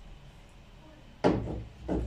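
A plastic IBC tank valve handled and set down among plastic fittings on a table: a sudden knock about a second in and a second knock near the end.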